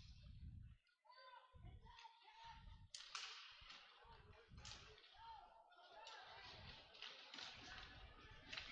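Very faint ice rink sound: distant voices carrying across the arena, with a few sharp knocks from play on the ice.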